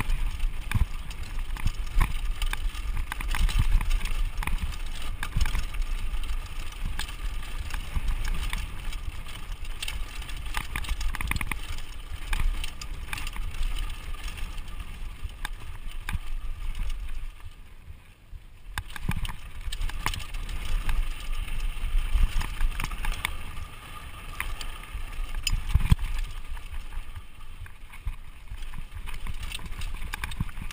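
Mountain bike riding fast down a dirt singletrack: wind rumbling on the microphone, tyres crunching over dirt, and the bike's chain and frame rattling and knocking over bumps. It eases briefly a little past halfway, then picks up again.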